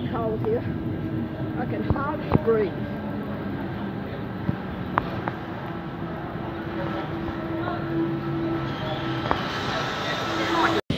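Double-deck electric suburban train pulling out of the station with a steady hum from its electric motors. Faint voices can be heard in the background.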